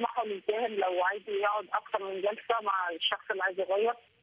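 Speech only: a person talking continuously over a narrow, telephone-like line that cuts off the high end of the voice.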